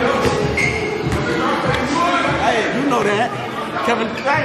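Several people's voices talking and calling out indistinctly, echoing in a large gym hall.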